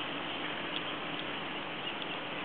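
Steady outdoor background hiss with no distinct event, broken only by two faint clicks about a second in.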